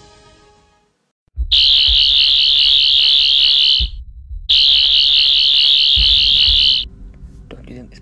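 An alarm sounds two long, loud blasts of about two seconds each with a short gap between them. It is a high-pitched, warbling tone over a low rumble.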